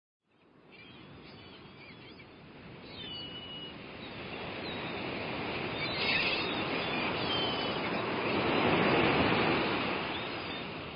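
Sea waves washing, building gradually from faint to much louder, with a few short bird calls over them, as a sound-effect opening to a song.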